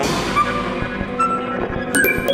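Free-improvised electroacoustic ensemble music: a sudden crash of noise opens and fades over about a second and a half, over held pitched tones and scattered short notes, with sharp clicks near the end.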